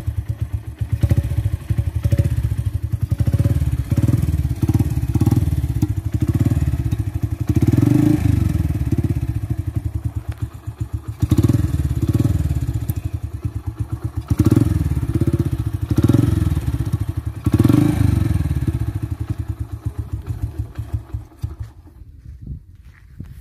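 Modified Bajaj CT100's single-cylinder four-stroke engine running through its exhaust, blipped with several short revs in the middle and easing back near the end.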